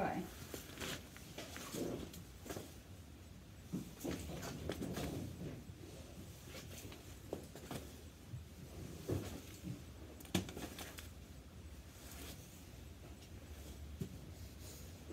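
Handling of a cotton lunge line as it is fed through the metal rings of a miniature pony's harness surcingle: soft rustling of the line with scattered light clicks and clinks of the fittings, the sharpest about ten seconds in.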